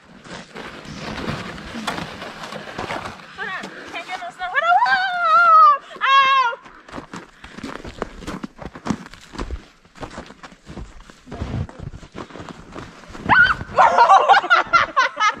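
High-pitched shouts and squeals of people playing in the snow a few seconds in, followed by a run of short crunches of feet and hands in packed snow.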